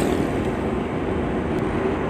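Steady engine and road noise of a moving vehicle, heard from inside its cabin: an even drone with no change in pace.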